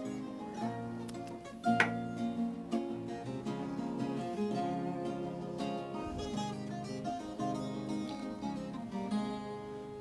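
A ten-string viola caipira and a nylon-string acoustic guitar playing the instrumental introduction to a sertanejo song, plucked melody over chords, with one sharp accented note about two seconds in.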